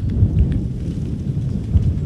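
Low, uneven rumble of wind buffeting the podium microphone in a pause in the speech, swelling in gusts.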